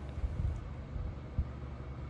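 Low steady background rumble, with two soft bumps about half a second and a second and a half in as hands handle a metal PCIe bracket against an M.2 adapter card.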